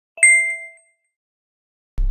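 A single bright notification-bell ding, a sound effect for clicking the bell icon of a subscribe button, struck about a quarter second in and ringing out within about half a second.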